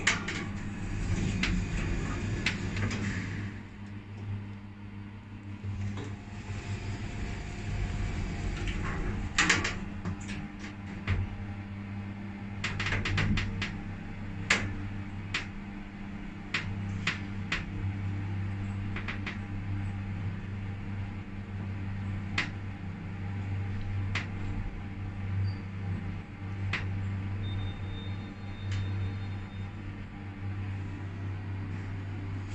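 Otis inverter-driven passenger lift travelling down: a steady low hum with a rushing sound, and a scattered run of sharp clicks and knocks from the car as it descends.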